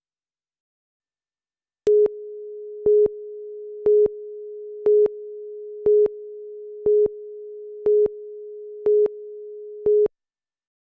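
Tape countdown-leader tone: silence, then about two seconds in a steady mid-pitched tone starts, with a louder beep once a second, nine beeps in all, cutting off suddenly at the end.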